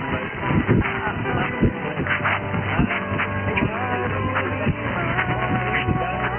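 A jumble of distant mediumwave AM stations sharing 666 kHz, heard through a communications receiver in LSB: music and talk overlap over band noise, with thin wavering tones drifting through, and no one station on top.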